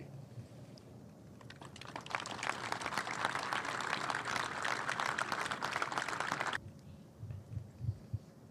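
Audience applauding: many hands clapping, building up about a second and a half in and stopping abruptly with about a second and a half to go.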